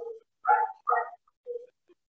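An animal's short whining calls, about four of them spread over two seconds with pauses between.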